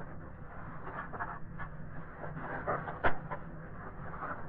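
Plastic spork prodding and scraping a set slab of cold farina in a styrofoam tray, with faint scattered ticks and one sharp tap about three seconds in, over a steady low hum.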